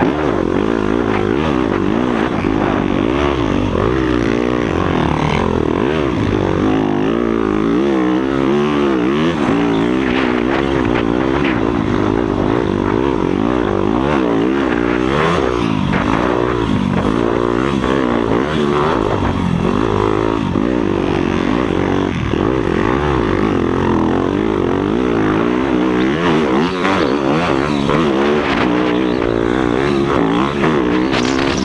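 Yamaha YZ motocross bike's single-cylinder engine revving hard as it is ridden around a dirt track, its pitch rising and falling constantly with the throttle.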